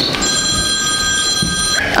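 Ringtone of an incoming call: one steady chord of several tones held for about a second and a half, then cut off.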